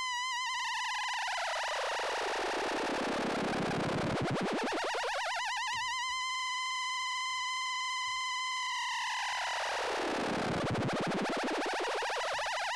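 Make Noise Maths run as an audio-rate oscillator through a wave-folder: a steady, high synthesizer tone with a buzzy, noisy layer that sweeps slowly down and back up, twice, as the modulation cycles. It sits near the top of the pitch range the Maths can put out.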